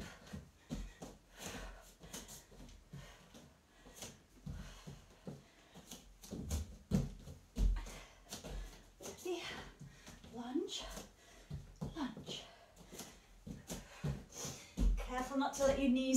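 Bare feet and hands landing on a foam mat in irregular thuds during burpees and lunges, with hard breathing between.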